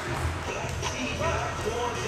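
Gym court sounds: short squeaks of basketball shoes on the hardwood and faint voices as players move into position, over a steady low hum.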